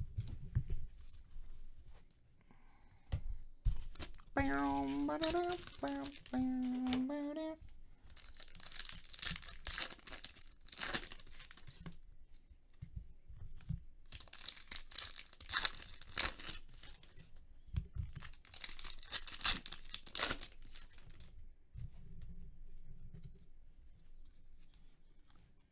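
Sports-card pack wrappers tearing and crinkling while cards are handled, in three long bursts in the second half.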